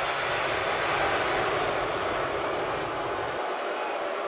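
A steady rushing noise with no distinct events; its deepest part drops away about three and a half seconds in.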